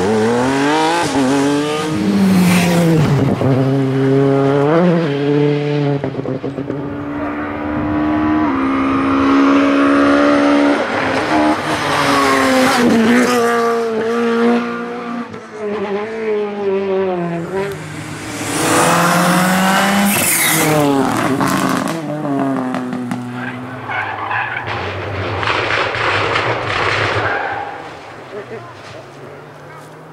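Rally car engines at full throttle on a tarmac stage, revving up and dropping back over and over through quick gear changes, as several cars pass in turn: a Porsche 911 first, a Peugeot 208 later on.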